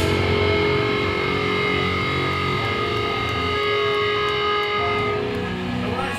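Distorted electric guitars holding a sustained, ringing chord through the amps, with no drum hits; the held notes drop out about five seconds in.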